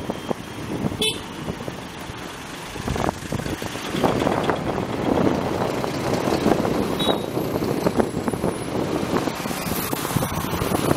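Road traffic: motor-vehicle engines rumbling, getting louder from about four seconds in, with a short horn toot about a second in and another brief horn near seven seconds.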